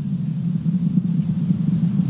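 Falcon Heavy rocket's engines during ascent, heard as a steady low rumble.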